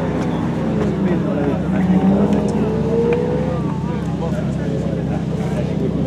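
Ferrari 512 TR's flat-twelve engine running on the track, its note rising about two seconds in as it pulls through a corner, with voices talking over it.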